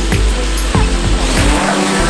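Background music with a steady beat, over the whine of a DJI quadcopter drone's motors spinning its propellers up for takeoff.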